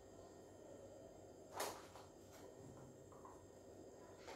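Near silence with one short stroke of a felt-tip marker on a whiteboard about a second and a half in, followed by a couple of faint ticks.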